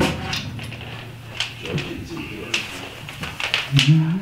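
Quiet room with a few short, sharp clicks and taps and brief bits of talk; near the end a voice comes in louder, rising in pitch.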